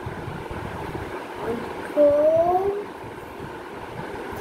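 A person's voice: one drawn-out vocal sound rising in pitch about two seconds in, over a steady background noise.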